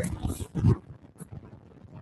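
A brief low vocal sound from a person in the first second, then quiet room tone.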